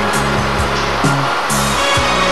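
Background music with a steady beat and a stepping bass line.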